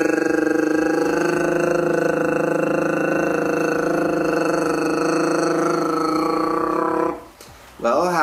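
A man's voice holding a long rolled R (tongue trill) on one steady pitch, with a fast flutter. It is the tongue roll that flutter tonguing is built on, done without the instrument, and it stops about seven seconds in.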